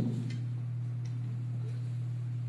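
Steady low electrical hum from the sound system, with a couple of faint ticks.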